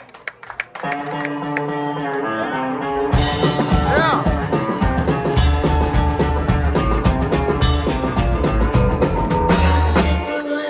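Live rockabilly trio of electric guitar, drum kit and upright bass starting a song. The guitar opens alone about a second in with held notes, and the drums and slapped-style upright bass come in at about three seconds for the full band.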